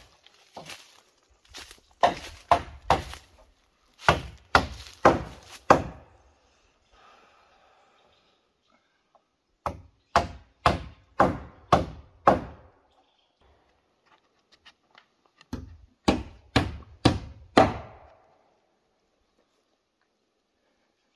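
Hammer driving nails into wooden roof boards: sharp blows in runs of three to six, about half a second apart, with short pauses between runs.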